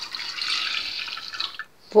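Milk pouring in a steady stream into a glass jug, cutting off suddenly just before the end.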